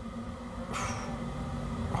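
A short breath, a brief airy burst about three-quarters of a second in, during a pause in talk, over a low steady hum.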